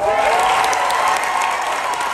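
A theatre audience applauding loudly, with sustained cheering voices over the clapping. It starts suddenly right as the speech ends.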